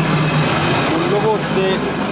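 A person speaking over a steady background of road traffic noise.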